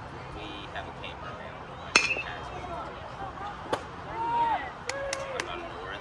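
A bat striking a pitched baseball about two seconds in: one sharp, ringing metallic ping, the loudest sound here, putting the ball in play. A few smaller clicks and brief shouts follow.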